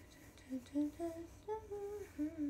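A young woman humming a tune with closed lips: a run of short notes that step up in pitch, starting about half a second in, the last note held.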